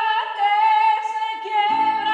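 A woman singing long held notes with little or no accompaniment, stepping slightly in pitch between notes. About a second and a half in, an acoustic guitar chord comes in under the voice.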